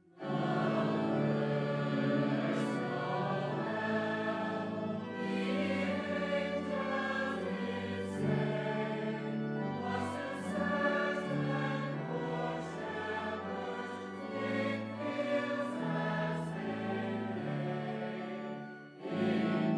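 Choir and standing congregation singing together with pipe organ accompaniment. The singing enters just after a brief pause at the start and holds steady, with long sustained chords.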